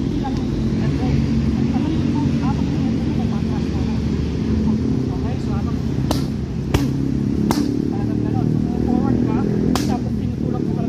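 Sharp slaps of strikes landing on focus mitts: three in quick succession a little past halfway, and a fourth near the end, over a continuous low background.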